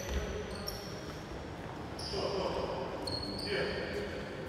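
A few short, high squeaks of basketball shoes on the gym floor, over the noise of a large, echoing sports hall with faint voices.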